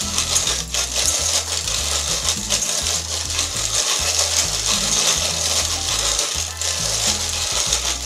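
Hand-cranked Victoria (Molino) grain mill grinding hard white wheat: a steady gritty crunching and scraping of the metal burrs crushing the kernels as the handle turns. The burrs are tightened for a finer second pass.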